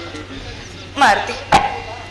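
A short vocal cry sliding in pitch about a second in, followed by a single sharp knock.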